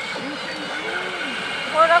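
Steady din of a pachinko parlour, with machines and their game audio running. A woman's voice comes in near the end.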